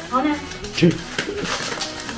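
Dog tearing and rustling crinkly gift-wrapping paper with its mouth. A person's voice comes in near the start, with a louder low vocal burst just before the middle.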